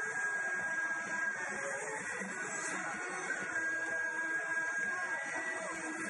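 Dance music from a DJ's sound system, played loud to a crowd and recorded as a harsh, smeared wash with no clear detail.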